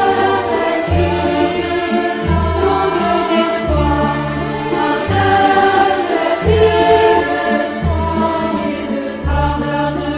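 Children's choir singing in French with orchestral accompaniment, including bowed strings. Low bass notes sound about once a second beneath the voices.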